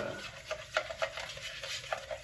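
Thick paint being stirred in a small paint can, the stirrer scraping and knocking against the can in irregular strokes. Water has just been added to thin it and break up paint that has begun to dry out.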